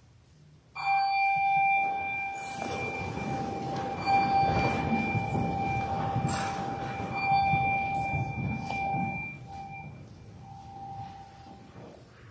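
Church bell ringing: a sustained ringing tone that starts suddenly about a second in, with a fresh swell about every three seconds, dying away near the end.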